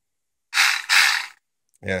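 A heavy breath close to the microphone, in two quick puffs about half a second in, with no pitch to it. A spoken word starts near the end.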